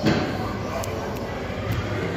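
A single dull thump right at the start, followed by a few faint clicks, over a steady murmur of voices in a large hall.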